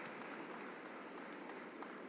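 Faint, steady ambience of a large hall, with a few soft clicks.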